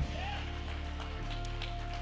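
Soft background music of steady held keyboard notes, with faint clapping and cheering from the audience in the first moments.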